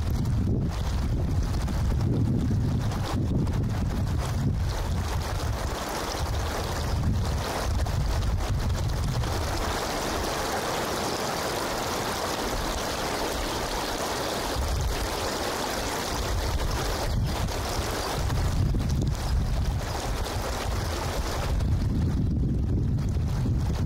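Wind buffeting the microphone with a low, gusty rumble. Around the middle the buffeting eases for several seconds, and a steady, higher rushing hiss of wind through the trees takes over before the rumble returns.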